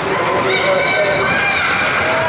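Voices of spectators calling out in an echoing ice arena, with a steady noisy rink background.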